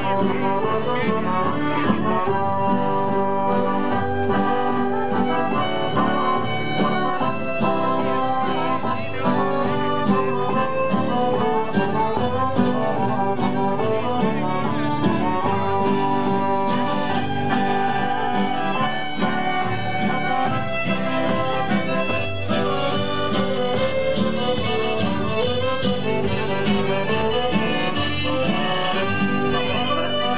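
Live folk dance music played by a small costumed ensemble with fiddle, a lively tune that runs without a break.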